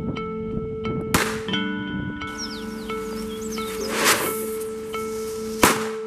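Three sharp bangs over background music, about a second in, about four seconds in and near the end: a handgun being fired and firecrackers going off.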